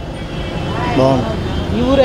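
A man speaking Telugu from about half a second in, over steady background road-traffic noise.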